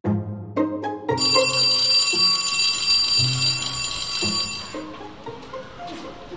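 Electric school bell ringing steadily for about four seconds, starting about a second in and stopping near the end, over background music with low held notes. It signals the end of the school day.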